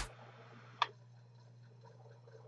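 A single short, sharp click about a second in, over a faint steady low hum.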